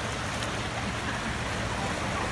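Steady splashing rush of water as a car's tyres drive through a street flooded by a burst pipe.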